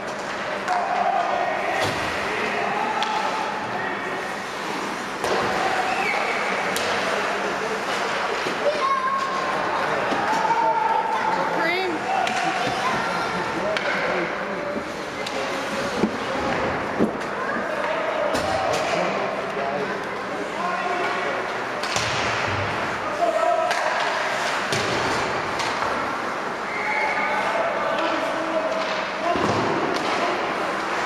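Ice hockey game in an indoor rink: spectators talking throughout, with sharp knocks and slams at intervals as the puck and sticks hit the boards and glass.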